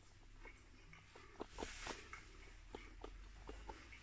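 Faint chewing of fried chips: scattered small mouth clicks and soft crunches, with one slightly louder crunch a little before the halfway point.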